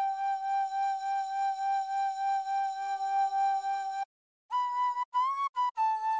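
Flute-like synth lead from the Serum software synthesizer, a synced sine oscillator through a resonant key-tracked filter that gives it a sharp edge, playing solo. One note is held for about four seconds, then after a short break come several shorter, higher notes, two of them bent upward in pitch.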